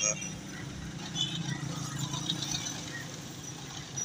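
Steady hum of road traffic, with faint voices.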